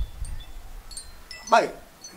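A few brief, high-pitched chime tones ring lightly during a pause in talk.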